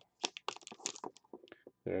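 Cardboard box of 2019 Elements trading cards being opened and its single pack lifted out, giving a run of short crackles and clicks of cardboard and packaging.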